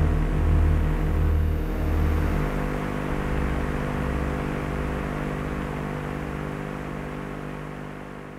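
Close of an ambient synthesizer piece: a sustained drone and pad with a noisy wash over it, low bass notes shifting in the first few seconds, then held tones slowly fading out.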